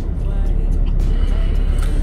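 Steady low road rumble inside a moving car's cabin, with music playing faintly.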